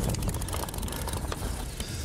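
Rapid fine clicking from a fishing reel on a rod fighting a halibut, over a steady low rumble.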